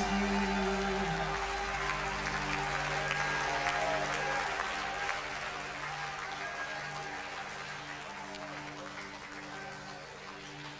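A held keyboard chord sustains under a congregation's applause and scattered voices, and the applause gradually dies away.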